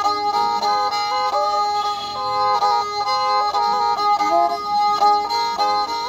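Nepali sarangi, a small carved wooden bowed fiddle, played with a bow: a short melodic phrase repeats over steady drone notes from the open strings.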